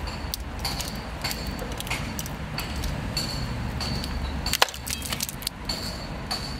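Pull-out test rig under load: a steady low rumble with light metallic clicks about twice a second, each with a faint high ring. About two-thirds of the way through comes a single sharp crack, the loudest sound, as the concrete face beside the anchored rebar cracks under the jack's load.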